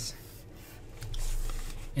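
A stylus rubbing across a tablet surface as it draws the straight lines of a box, a scratchy stroke that grows louder from about a second in.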